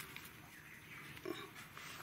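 Faint rustle of a straw nest as eggs are picked up, with a single short, low cluck from a hen a little over a second in.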